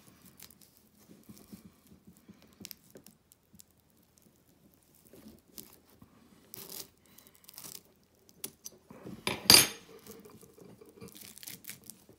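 Hands splicing a loop into braided rope with a metal splicing fid: quiet, intermittent rustling and scraping of the rope braid, with small clicks from the fid. One louder, brief burst of handling noise comes about nine and a half seconds in.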